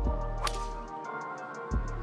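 A driver striking a golf ball off the tee: one sharp crack about half a second in. Background music with a steady beat and deep bass notes plays under it.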